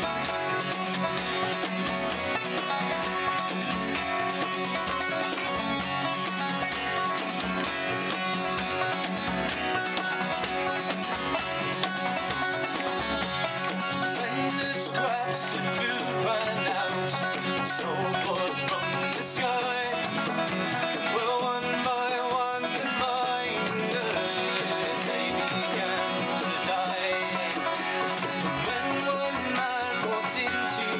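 Acoustic folk band in an instrumental passage: steel-string acoustic guitar strummed and a banjo picked in bluegrass style, over a steady beat.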